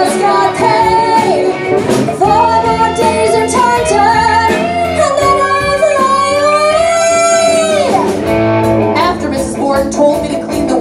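Women singing over a live rock band of guitar, bass, piano and drums, with more than one voice at once. A long wavering held note ends about eight seconds in.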